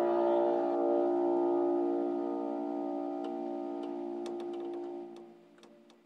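A piano's final chord held and slowly dying away, fading out about five seconds in, with a few faint clicks in its last seconds.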